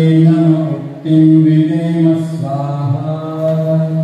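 Sanskrit Vedic mantra being chanted in long, steady held notes, with a short break for breath about a second in and a change of pitch near the three-second mark.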